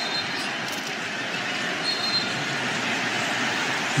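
Steady arena crowd noise, many voices blended into an even din, with a couple of brief high tones near the start and about two seconds in.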